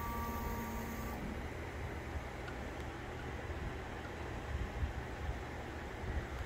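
Prusa XL 3D printer running its Z-axis load-cell calibration: a steady motor whine for about the first second that then stops, leaving a steady low hum of the printer's motors and fans.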